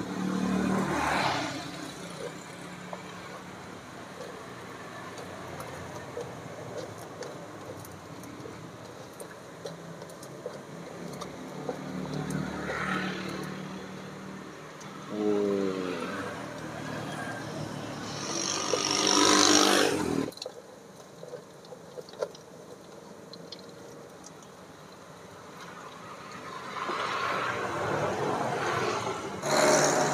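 Motorbike engines passing on the road in several swells, the loudest about two-thirds of the way through, over a steady sizzle of egg-dipped sempol skewers deep-frying in a pot of hot oil.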